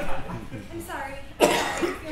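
A woman's voice on stage, with one sharp, loud burst about one and a half seconds in.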